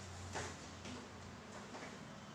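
Quiet room tone with a low hum and a few faint, short taps or clicks, the first about a third of a second in and two more near the end.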